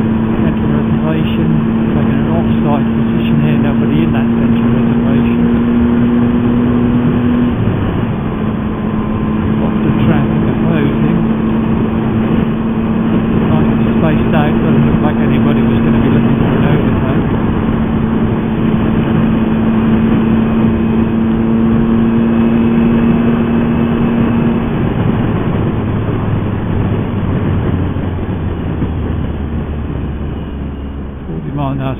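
Motorcycle engine running at a steady cruising note under wind and road rush. The note breaks briefly about a quarter of the way in, and near the end it falls to a lower pitch.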